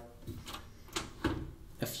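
A few light clicks and a soft thump as a Siemens oven door is opened.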